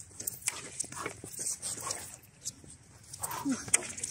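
Sword-and-shield sparring: scattered light knocks of the sparring weapons, a short grunt from one fighter a little after three seconds in, then a sharper hit just before the end.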